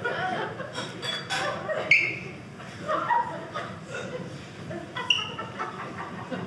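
Audience chuckling and laughing in scattered, uneven bits, with one sharper, louder laugh about two seconds in.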